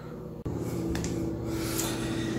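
Shower water spraying onto a bare foot and the tiled shower floor, a steady hiss of running water that starts abruptly about half a second in.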